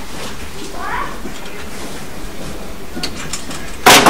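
Knocking on an apartment door: one sudden loud knock near the end, the first of a run of knocks. Before it, low steady room noise with a brief faint rising sound about a second in.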